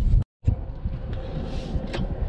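Low, steady rumble of a car's running noise heard inside the cabin, broken by a moment of complete silence about a quarter second in.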